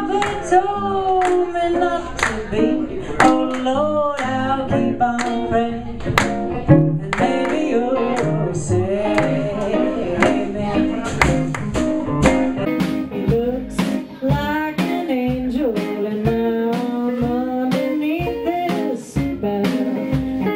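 Live band performance: a woman singing lead over electric guitars, upright bass and drums, with a steady drum beat throughout.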